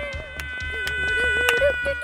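A cartoon child's drawn-out whiny wail, its pitch wobbling and dipping, over steady high tones.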